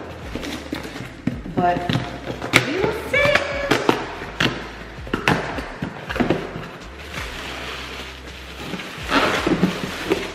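Cardboard boxes being handled and opened: scattered knocks and scrapes of cardboard flaps and packaging, with a denser rustle near the end.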